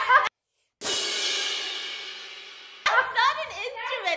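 A single cymbal crash after a brief dead silence, ringing and fading away over about two seconds; voices come back in near the end.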